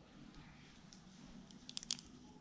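A quick cluster of small sharp clicks near the end, from eyeglass frames being handled and put on, over faint room tone.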